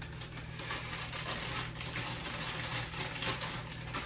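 Chia seeds being poured into a measuring cup: a fast, continuous patter of tiny seeds over a steady low hum.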